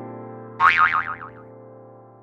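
Intro jingle ending on a held keyboard chord that slowly fades. About half a second in, a springy cartoon 'boing' sound effect wobbles and falls in pitch, then dies away.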